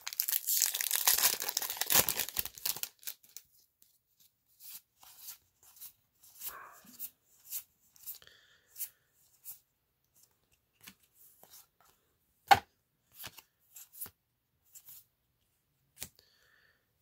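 A Magic: The Gathering booster pack's foil wrapper torn open over about three seconds, then cards slid and flicked against each other one at a time, with a single sharp click about twelve seconds in.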